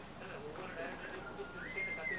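A faint, thin whistle-like tone that comes in about a second in, steps up in pitch about halfway through and holds, over quiet room murmur.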